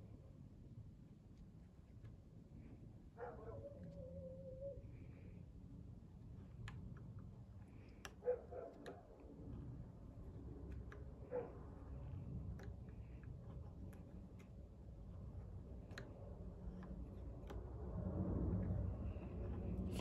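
Mostly quiet room tone while a Helicoil thread insert is wound in by hand with its insertion tool, with a few faint scattered clicks. A few seconds in there is a short whine that drops in pitch and then holds briefly.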